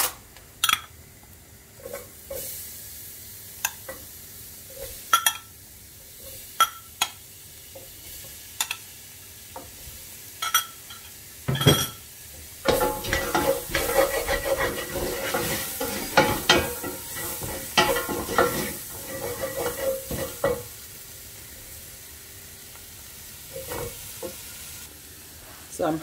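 Wooden spoon stirring vegetables frying in a stainless steel pot over a steady sizzle, with scattered knocks of the spoon against the pot. Just before twelve seconds in there is one loud clatter, then about eight seconds of brisk stirring and scraping before it settles back to the sizzle and a few knocks.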